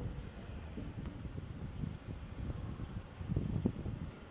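Low, steady background rumble with a few faint knocks, slightly louder a little after three seconds in.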